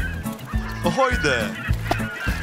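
Cartoon soundtrack music with short, falling bird-like calls about a second in.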